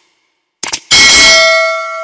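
Subscribe-button sound effects: a couple of quick mouse clicks just over half a second in, then a notification-bell ding struck just under a second in that rings on in several clear tones and slowly fades.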